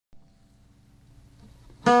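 The opening of a music track: a faint held tone swells slowly, then a loud plucked-string chord comes in just before the end.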